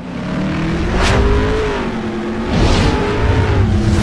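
Sound-effect track of rushing pass-bys: a continuous low rumble with a steady hum, and two whooshes that swell and fade, peaking about a second in and again near three seconds in.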